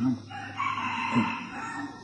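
A rooster crowing once: one long call, starting a moment after the speech stops and lasting about a second and a half.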